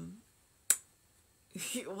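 A single sharp click about two-thirds of a second in, in a pause between stretches of a woman's speech.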